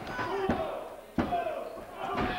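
A referee's hand slapping the wrestling ring mat twice during a pin count, about half a second in and again about 1.2 s in. The count stops short of three because the pinned wrestler kicks out. Crowd voices rise behind the second slap.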